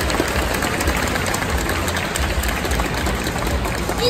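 Audience applauding, a dense even clatter of clapping over a steady low rumble.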